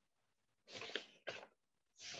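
A man sneezing about two-thirds of a second in: a burst followed right after by a shorter second burst.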